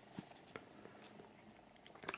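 Near silence: room tone with a few faint soft ticks from fingers handling a cotton T-shirt's neck and care label.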